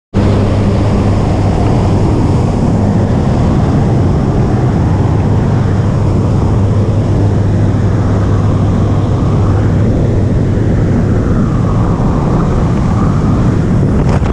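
Steady drone of a jump plane's engine and propeller, heard from inside the cabin over a rush of air noise.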